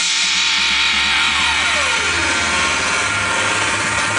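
DJ transition effect in a club mix: a loud noisy wash with a falling pitch sweep over about a second and a half, a low rumble building under it, cutting off sharply at the end as the mix changes from a guitar track to techno.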